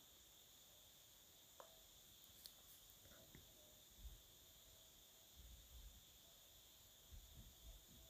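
Near silence, with a few faint soft knocks and small clicks from a steam iron being worked over fabric on an ironing board.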